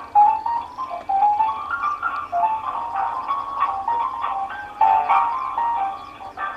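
Telephone hold music playing through a phone's speaker: a simple melody of stepped notes, thin and narrow in tone as heard over a phone line.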